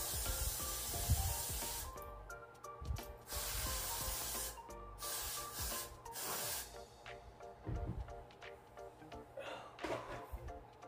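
Got2b Glued aerosol hairspray hissing from the can in three long bursts over the first seven seconds, each about one and a half seconds long, with background music underneath.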